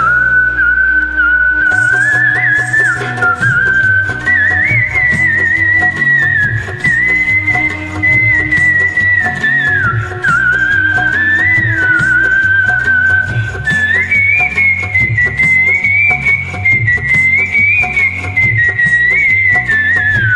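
Instrumental interlude of a film-song karaoke backing track: a single high, pure-toned melody line over a steady bass and drum beat.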